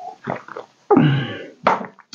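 A man drinking coffee from a mug: a few short sipping and swallowing noises, then a longer voiced throat sound about a second in and a short sharp click near the end.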